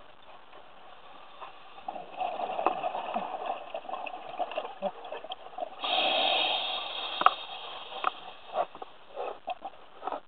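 Scuba regulator exhalation bubbles heard underwater, a rushing, bubbling noise that starts about two seconds in and swells into one loud burst around six seconds. Scattered sharp clicks run through it.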